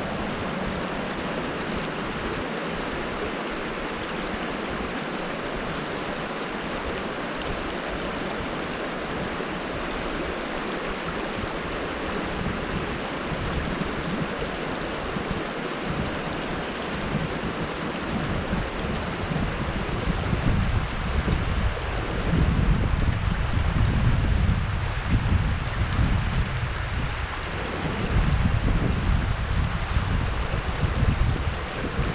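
Shallow rocky creek water running steadily over stones in a riffle. From a little past halfway, a louder, uneven low rumble joins the water sound.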